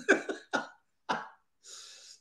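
A man laughing and coughing in three short, sharp bursts about half a second apart, then a breath in.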